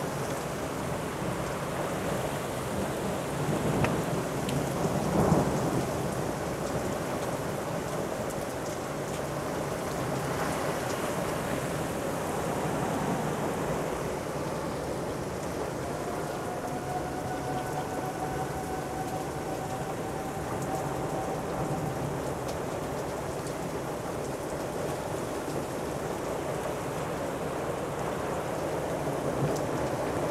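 Heavy rain and wind of a severe thunderstorm, with a louder swell of thunder about five seconds in.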